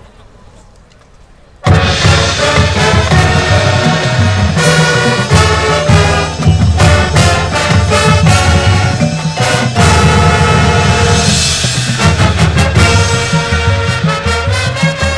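A marching band comes in loudly and abruptly a little under two seconds in, after a quiet stretch. Full brass (trumpets and trombones) plays over drums and front-ensemble mallet percussion and timpani, with strong repeated accents.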